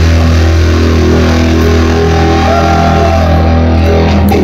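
Live rock band holding a loud sustained chord: electric guitars and bass ringing on one steady low note under a high wash, with no drum beats.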